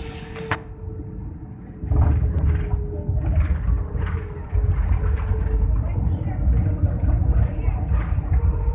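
Cabin sound of an Airbus A320-family airliner touching down: the low rumble jumps sharply about two seconds in as the wheels meet the runway. It grows louder again about halfway through as the spoilers deploy and the plane brakes on the rollout.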